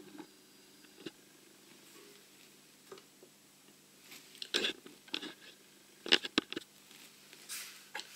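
Faint, scattered clicks and light knocks of fly-tying tools being picked up and handled, with a cluster of them around six seconds in, over a faint steady low hum.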